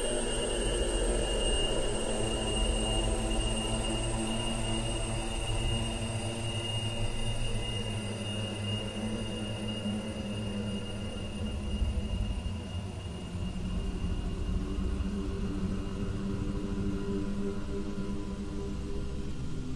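Experimental electronic music: a steady droning texture with sustained high tones held over a low rumble.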